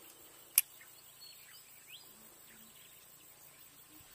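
Faint rural ambience of bird chirps and insects with a thin steady high whine, broken by one sharp click about half a second in.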